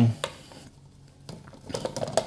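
Light plastic clicks and knocks as a Ninja Creami pint is set into its black outer bowl and the lid is fitted, with a few more clicks near the end.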